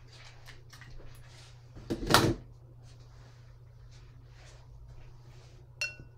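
Soft, repeated swishes of a watercolour brush on rough paper, with a louder sudden noise about two seconds in and a short ringing click near the end.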